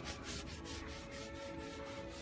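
Folded gauze rubbing over a painted frame, wiping on oil-based gel stain in repeated strokes.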